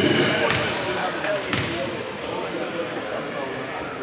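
A basketball bounced a few times on a hardwood gym floor, each bounce a sharp slap with a short echo in the large hall: the free-throw shooter dribbling before his shot, with voices in the background.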